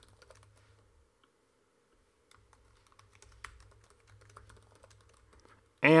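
Typing on a computer keyboard: faint, scattered key clicks, broken by a pause of about a second early on.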